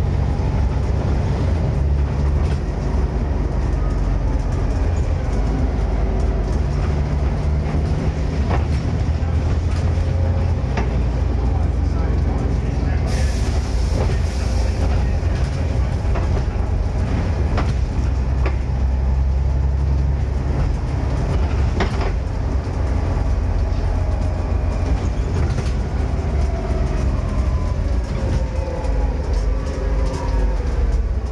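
Volvo B7TL double-decker bus under way, heard from the lower deck: the six-cylinder diesel drones steadily, with occasional knocks and rattles from the body. There is a short hiss about thirteen seconds in, and a falling whine near the end as the bus slows.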